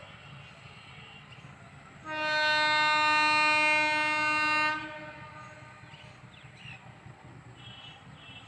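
Locomotive horn sounding one long, steady blast of about two and a half seconds, starting about two seconds in.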